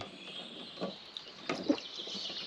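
Faint woodland birdsong: a few brief chirps over low, steady background noise.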